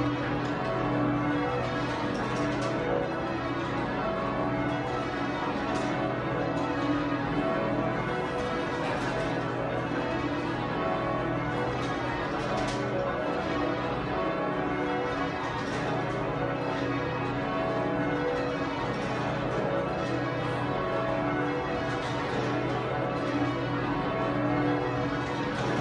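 The twelve bells of St Mary Redcliffe, a heavy ring in B with a tenor of about 50 cwt cast by John Taylor, rung full circle in Devon-style call changes. Strikes follow one another in a continuous, even stream, and the low tones of the heavier bells hang under the higher ones.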